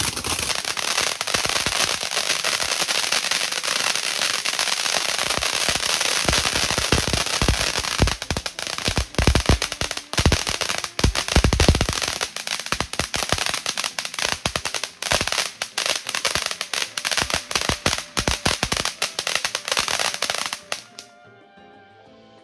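Ground fountain firework spraying sparks with a steady hiss. From about six seconds in it turns to dense crackling, with deeper pops around ten to twelve seconds. It cuts off suddenly near the end.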